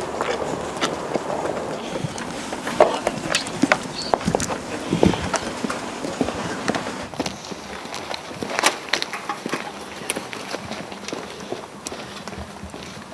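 Hurried footsteps of a group of people on a pavement: an irregular patter of steps.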